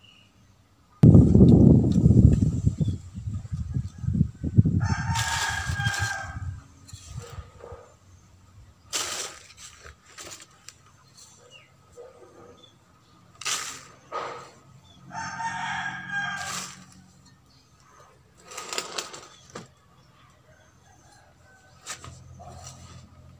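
A rooster crows twice, about five seconds in and again around fifteen seconds. Before the first crow the loudest sound is a low, rustling rush of loose potting soil being tipped onto newspaper lining a plastic basket, followed later by a few short rustles and knocks as the soil is handled.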